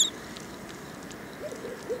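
A bird's short, high rising chirp right at the start, then a faint, low hoot-like call near the end over quiet outdoor background.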